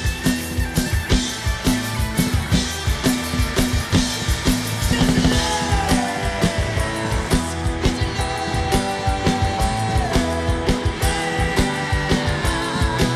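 Live punk-pop rock band playing: a steady drum-kit beat under electric guitars and keyboard, with a lead line of long held notes that slide down in pitch about five and eight seconds in.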